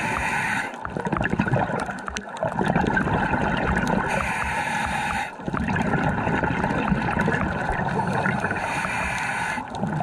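Scuba diver breathing through a regulator underwater: a hiss on each inhale, three times about four seconds apart, with the gurgle of exhaled bubbles in between.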